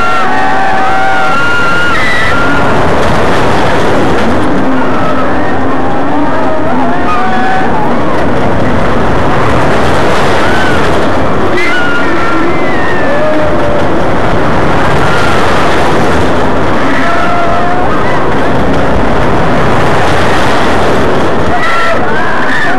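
Loud, steady wind rushing over the microphone of the rider's video glasses as a looping thrill ride carries the car round its full-circle track, with short, higher pitched sounds scattered through it.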